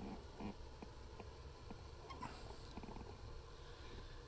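Quiet room tone: a faint low hum with a few soft, irregular ticks.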